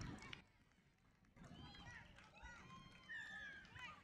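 Faint, indistinct shouting and calling from players and spectators, starting after a short quiet stretch about a second in, with one longer held call near the end.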